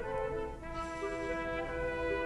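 Background music: slow, sustained notes that change pitch a few times.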